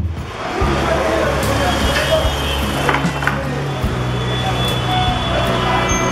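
A music intro with drum beats stops right at the start. Street ambience follows, with traffic noise and a low hum under indistinct background voices.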